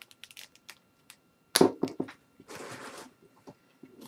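Knife cutting into a vacuum-sealed plastic bag: small crinkles and clicks, a sharp snap about one and a half seconds in, then a short scratchy rasp as the plastic is slit.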